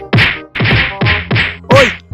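Rapid punches landing on a body, five whacks in about two seconds, the last one loudest, each with a falling tone like a dubbed-in punch sound effect.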